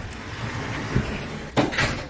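Louvered pocket door sliding open along its track, a steady rolling rush for about a second and a half, ending in a short, louder burst of noise.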